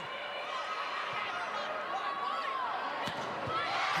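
Volleyball rally in an indoor arena: steady crowd noise with sneakers squeaking on the court and a sharp smack of the ball being hit about three seconds in.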